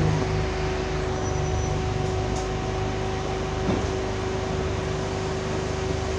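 Interior of an Alexander Dennis Enviro200 single-deck bus: its engine and ventilation run steadily, a low rumble with a constant tone held over it.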